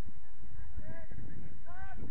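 Geese honking in a few short calls, about a second in and again near the end, over wind rumbling on the microphone.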